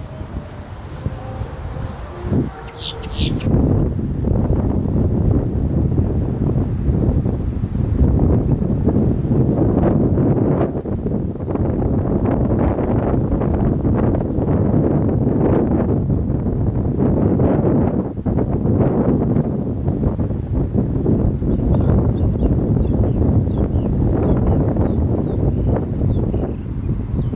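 Wind buffeting the microphone: a loud, steady low rumble that sets in about three seconds in, after a short high-pitched sound. Faint short high chirps come near the end.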